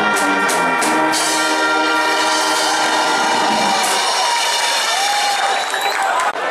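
Marching band brass section playing, with sharp drum hits under the chords in the first second. The band then holds one long chord, which fades away a few seconds in, and crowd voices come up near the end.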